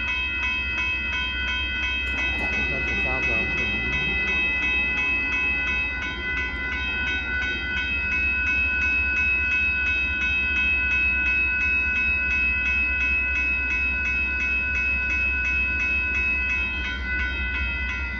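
Railroad grade-crossing warning bell ringing with even strokes, about two to three a second, while the crossing is activated for an approaching train. A steady low rumble lies underneath.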